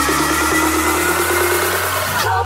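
Sped-up electronic dance music (a nightcore future house remix) in an instrumental passage with no vocals: one long held note over the beat, with the deepest bass cut out.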